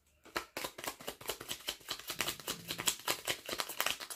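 Tarot deck being shuffled by hand: a rapid, dense patter of card clicks that starts a moment in and keeps going.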